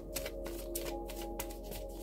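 A deck of fortune-telling cards being shuffled by hand: a quick run of soft card clicks and taps. Behind it is quiet background music with steady held tones.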